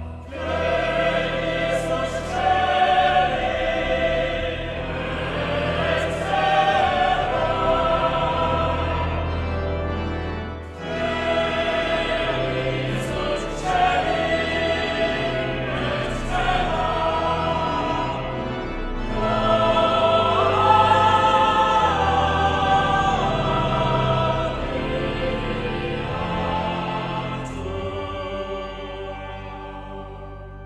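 Boys-and-men church choir singing a Latin Sanctus in sustained chords over pipe organ, with low held organ notes underneath. The music breaks off briefly about eleven seconds in and then resumes.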